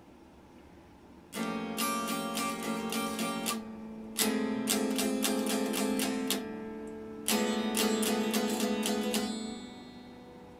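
Stratocaster-style electric guitar being strummed: three runs of quick chord strokes, the first starting about a second in, with short breaks between them, dying away just before the end.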